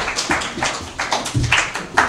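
A few people clapping unevenly: scattered, irregular claps, several a second.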